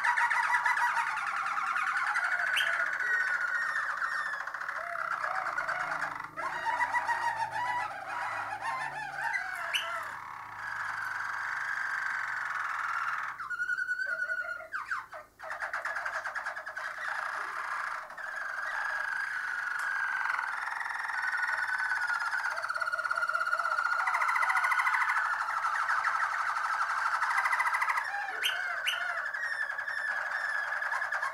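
Harzer Roller canary singing its continuous low rolling song, long runs of very rapid trills. About halfway through, the song breaks briefly into higher, more separated notes, then the rolling resumes.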